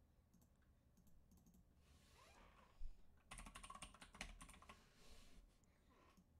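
Faint computer keyboard typing: a quick run of keystrokes about halfway through, lasting a couple of seconds.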